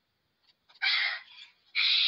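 A short, breathy, wordless sound from a high-pitched girl's voice about a second in, after a brief silence; talking resumes near the end.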